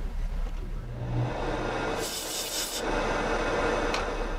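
Steel carving instrument scraping over amalgam in a tooth: a rough, scratchy rubbing, louder and brighter for just under a second about two seconds in.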